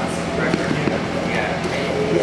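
Indistinct talking, with a few light knocks and a steady low hum underneath.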